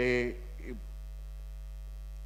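Steady low electrical mains hum, with a brief voiced syllable at the very start.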